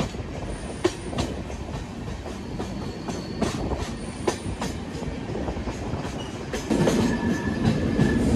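Passenger train's wheels running on the rails, heard from inside a coach: a steady rumble with a few sharp clicks. The sound grows louder about seven seconds in, with a brief thin squeal near the end.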